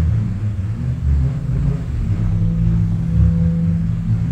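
Bullroarer whirled on its cord: a loud, low roar that wavers in strength.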